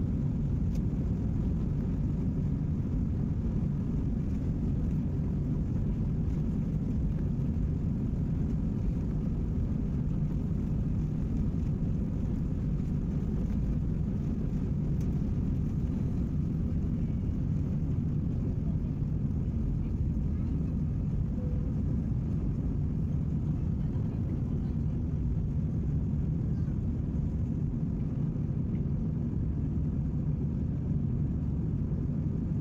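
Jet airliner heard from inside the passenger cabin during takeoff: the engines at takeoff thrust make a steady, even low rumble through the takeoff roll, lift-off and initial climb.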